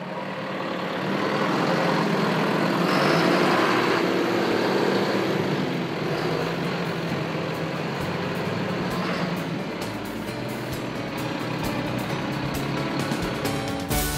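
John Deere tractor's diesel engine running as the tractor drives in, loudest a few seconds in, mixed with background music.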